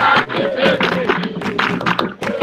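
Recorded Afro-Brazilian circle-dance music: hand drums and clapping struck in quick succession under group singing and crowd voices.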